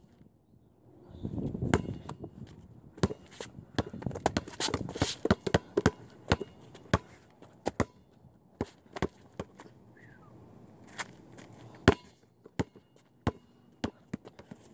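Basketball bouncing on a concrete sidewalk as it is dribbled, a run of sharp, irregular bounces starting about a second in, quickest in the first half and thinning to one or two a second later on.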